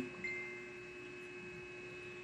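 Steady low electrical mains hum with a short, faint high tone about a quarter second in.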